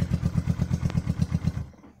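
1970 Honda CB350's air-cooled parallel-twin engine idling with an even exhaust beat, then cut by the handlebar kill switch about one and a half seconds in and dying away quickly.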